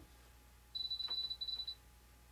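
RC radio transmitter giving a high electronic beep about a second long, with a short break partway through, as its sub-trim settings are stepped through.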